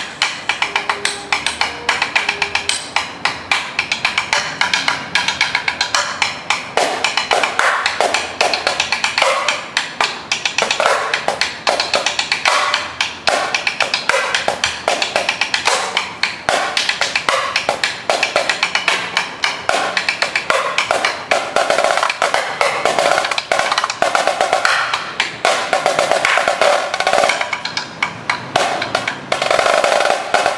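High-tension marching snare drum played in a fast rudimental solo: dense strings of strokes with several sustained rolls, the longest about two seconds long late on.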